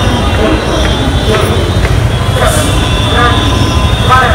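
Loud, steady street noise: a constant low rumble of road traffic with the voices of people around.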